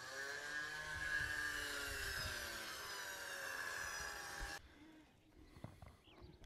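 Battery-powered electric winch motor reeling in its cable, a steady whine that sags slowly in pitch as the cable tightens under load, then stops abruptly about four and a half seconds in.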